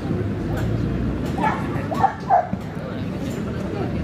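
A dog giving three short barks near the middle, the last two close together and the loudest, over background chatter.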